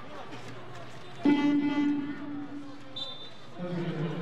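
Basketball arena horn sounding one steady buzz for about a second and a half, starting about a second in over crowd noise during a dead ball, the kind of horn that signals a substitution.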